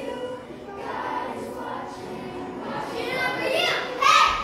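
A group of children singing together, getting louder near the end.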